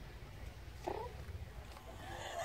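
A single short, faint animal call about a second in, from the dog or the kitten, over a faint low rumble.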